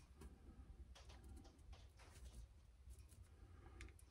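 Near silence: room tone with a few faint, short clicks of plastic spring clamps and wooden strips being handled.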